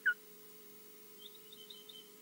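Osprey alarm calling: one sharp, loud call with a falling pitch right at the start, then a quick run of faint high chirps near the end.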